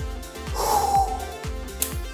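Background electronic music with a steady beat. About half a second in, a short breath sound stands out over it.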